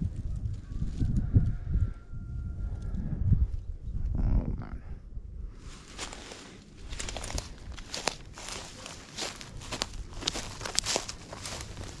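Footsteps crunching through dry grass and brush, with a dense run of short crackles from about halfway through. A low rumble fills the first few seconds.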